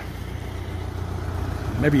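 A log skidder's diesel engine idling steadily.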